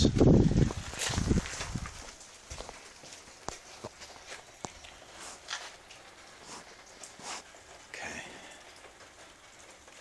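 Wind buffeting the microphone for about the first second and a half. Then a quiet stretch with scattered light footsteps and clicks.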